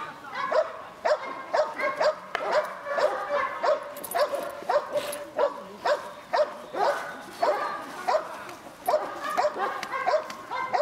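A dog barking over and over in a fast run of short, high barks, about two to three a second.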